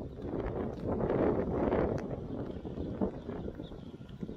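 Wind buffeting the microphone in gusts, a low uneven rumble that swells about a second in and eases off toward the end.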